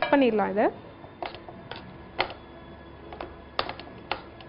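A spoon clicking and knocking against the side of a bowl at irregular moments while thick oats pancake batter is stirred, with a quick cluster of three clicks near the end. A woman's voice is heard briefly at the start.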